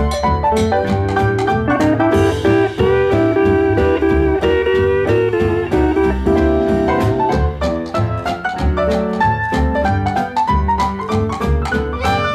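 Instrumental break of a 1951 western swing band recording: a guitar carries the lead, with some long held notes in the middle, over a steady bass-and-rhythm beat.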